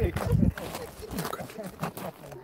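A person laughing, with bits of voices, and a loud low rumble on the microphone in the first half second.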